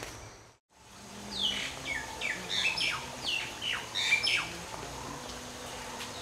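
A bird calling: after a moment of silence, a quick run of short, falling chirps for about three seconds, over faint outdoor background noise.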